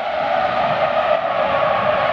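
Steady rushing noise with no distinct pitch, a transition sound effect laid under a title card.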